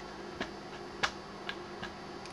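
A few faint, short clicks at uneven intervals, about one every half second, over a low steady hum.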